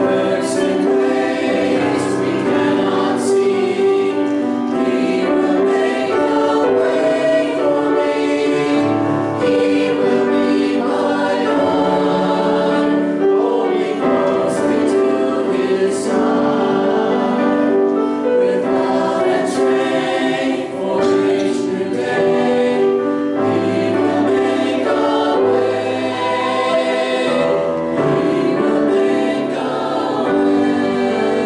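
Mixed church choir of men's and women's voices singing a hymn in harmony, the voices sustained through the whole stretch.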